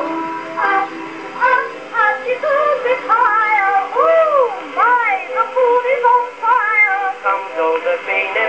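Acoustic-era 1911 Victor record played on a 1905 Victor Type II horn phonograph: an instrumental break from the small orchestra, its melody swooping up and down in pitch glides about halfway through, with a narrow, boxy tone.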